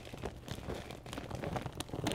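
Irregular crinkling and rustling of a plastic bag of potting soil being handled, with soil shifting, as a scatter of small clicks and scrapes.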